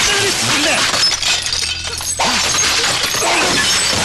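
Glass shattering and equipment crashing as hospital equipment is smashed, with a brief lull and then a sudden new crash a little over two seconds in.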